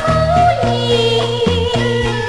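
Mandarin xiaodiao-style popular song played from a 1979 vinyl LP: a high female voice singing a melody with vibrato over a band accompaniment with a stepping bass line and a regular beat.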